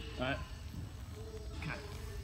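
Speech: a man says a single word, then gives a brief faint hum, over a low steady background rumble.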